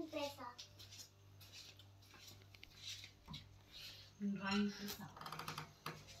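A short voice-like sound about four seconds in, followed by a quick run of clicks, over a faint steady low hum.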